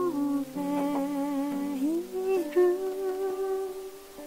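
Music: a slow, wordless melody of long held notes that glide from one pitch to the next, over sustained accompaniment chords, growing quieter near the end.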